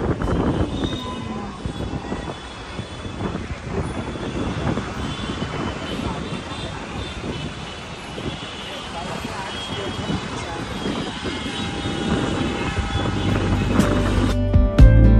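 Street traffic and wind noise heard from the upper deck of an open-top tour bus, with indistinct voices.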